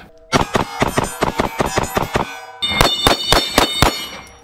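Handgun fired in two rapid strings, about six shots a second with a short pause between, at steel plate targets that ring when hit, most clearly in the second string.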